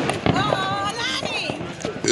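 People's voices talking and calling out, not made out into words.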